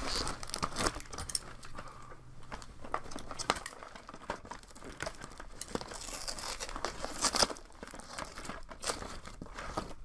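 Crinkling and rustling of a cardboard box and its packing as hands rummage through it, with irregular small clicks and scrapes.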